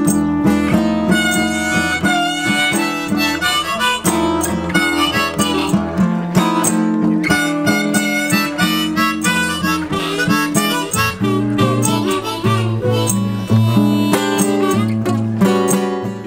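Blues harmonica played from a neck rack over a strummed acoustic guitar, an instrumental break with no singing.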